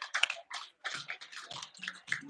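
A small group clapping their hands in scattered applause. The claps are densest at first and thin out toward the end.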